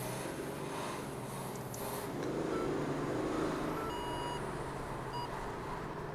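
Engine sound of a Mercedes CLS driving ahead, heard from inside a following car: a steady drone that swells about halfway through, produced by an illegal sound generator that the officers judge does not sound like a real V8. A few short electronic beeps come in between about two and five seconds in.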